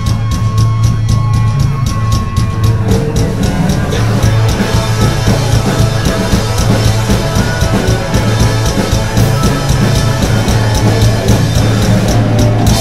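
Live garage-punk band playing loud and fast: distorted electric guitars, bass and a drum kit, with cymbals struck in a steady fast beat.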